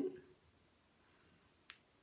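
A single short, sharp click from fingers working a hair elastic onto the end of a small braid, about three-quarters of the way in, against an otherwise quiet room.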